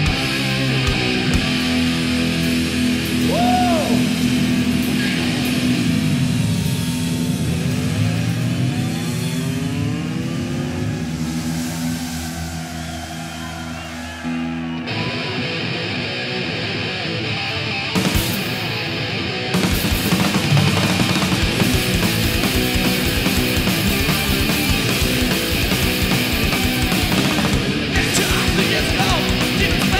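Live thrash metal band playing. Sustained distorted guitar chords with sweeping pitch glides fill the first half; about halfway through, the full band comes in with fast drumming that grows denser a few seconds later.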